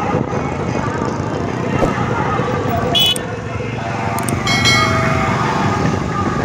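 Many motorcycles running together along a road, a steady rumble of engines, with short horn toots about three seconds in and again around four to five seconds, and voices over the engine noise.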